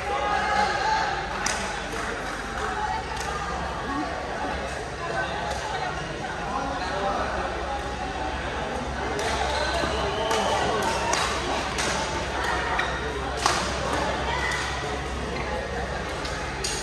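Badminton rally: racket strikes on the shuttlecock heard as a handful of sharp, irregularly spaced smacks over steady crowd chatter in a large sports hall.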